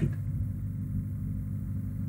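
A steady low hum with no speech, the background noise of the recording.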